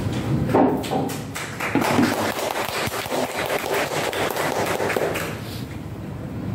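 A rapid, irregular run of light taps and knocks, several a second, lasting about five seconds and fading out near the end.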